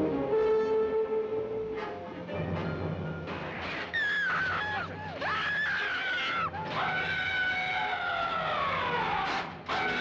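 Dramatic orchestral music from a 1950s science-fiction film trailer, with brass in it. In the second half a high wavering sound rises over the music, and then a long tone glides steadily downward.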